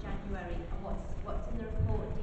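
Speech: a woman talking into a handheld microphone, with a low bump near the end.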